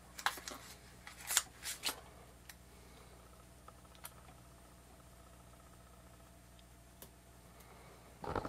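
Scissors snipping a small paper label: four short crisp cuts in the first two seconds, then only a faint steady low hum.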